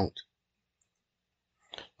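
A few faint, short computer-mouse clicks in near silence.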